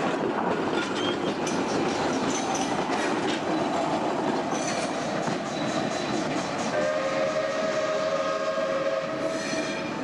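Passenger train with a diesel locomotive rolling past, wheels clicking over rail joints over a steady rumble. About seven seconds in, several steady high-pitched tones join in and hold to the end.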